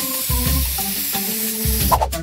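Aerosol hairspray can spraying: one long, steady hiss.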